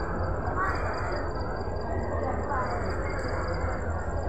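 A diesel-electric locomotive engine running at a distance, a steady low rumble, with a few faint calls in the background.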